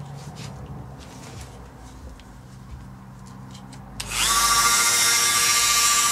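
A small router is switched on about four seconds in and runs at speed with a loud, steady, high-pitched whine, ready to rout inlay pockets in an ebony fingerboard. Before it starts there are only a few faint handling clicks.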